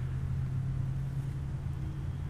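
A steady low mechanical hum, like an engine or machinery running nearby, holding one pitch.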